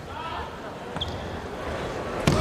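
Gymnasium crowd murmur with faint voices during a volleyball serve, and one short sharp smack about a second in as the ball is struck.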